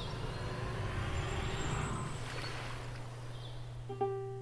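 Steady outdoor ambient noise with a constant low hum, easing slightly after about two seconds.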